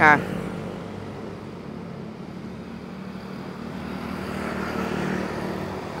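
Road traffic going by: a motor vehicle's engine hum and road noise builds slowly, loudest about five seconds in, then eases off.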